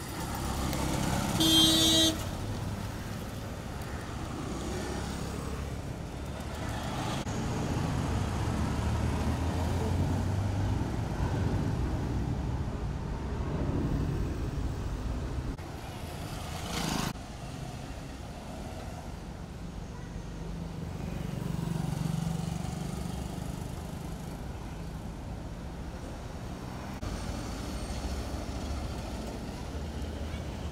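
Road traffic going past, with a short horn honk a second or two in, the loudest sound; vehicles swell and fade as they pass. A brief knock about halfway through.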